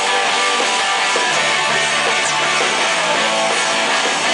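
Live rock band playing loud and dense, with electric guitars to the fore over drums; a low sustained note comes in about a second in. Recorded from the audience in the hall.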